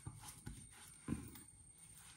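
Hands patting and rubbing moisturizer into the skin of the neck: three soft pats about half a second apart.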